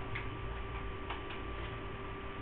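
Room tone with a steady electrical hum and a few faint, irregularly spaced clicks.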